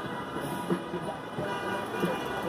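Steady hum of city street traffic: cars and buses running and passing.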